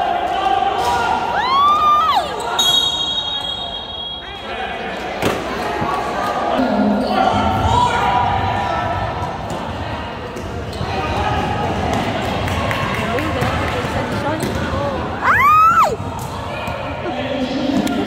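Basketball game on an indoor hardwood-type court: the ball bouncing and players' sneakers squeaking on the floor, with two sharp squeaks near the start and about three-quarters through, over spectator chatter echoing in the gym hall.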